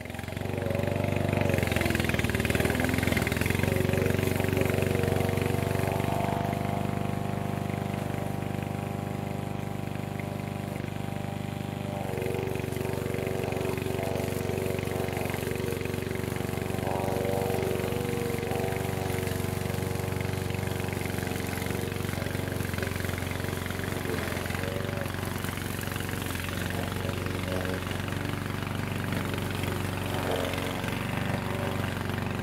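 Vigorun VTC550-90 remote-control tracked mower's petrol engine running steadily under load as it cuts through long grass, its note shifting slightly about twelve seconds in.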